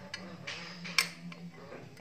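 Light clicks and scraping of a metal tool against a new front fork oil seal as it is worked down into a Yamaha Jupiter MX fork tube, with one sharper click about a second in. A faint steady low hum runs underneath.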